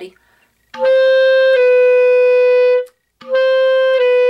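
Clarinet playing a held high D that steps down a half step to C sharp, fingered with the pinky C-sharp key. The two-note figure is played twice, the second time starting about three seconds in.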